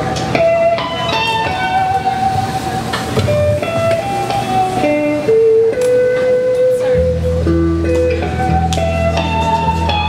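Live rock trio playing: electric guitar holding and stepping through a sustained lead melody over drums and bass guitar. A strong deep bass line comes in about seven seconds in.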